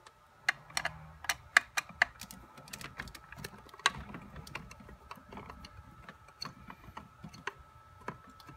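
Screwdriver working the screws of a water pump's plastic top cover: irregular sharp clicks and light ticks of metal on screw heads and plastic, thick in the first half and sparser after.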